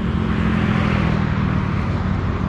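Highway traffic going by: a steady low rumble of passing cars and other vehicles.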